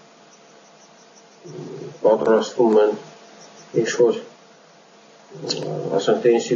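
A man speaking in short phrases with pauses between them, heard over a video-call connection.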